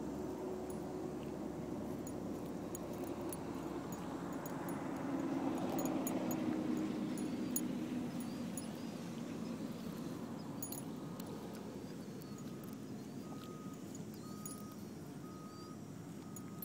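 A Corgi–Shiba Inu mix dog tearing and chewing grass, heard as scattered crisp clicks and crunches. Under it runs a low hum of passing traffic that swells in the middle. A faint short high beep repeats about once a second near the end.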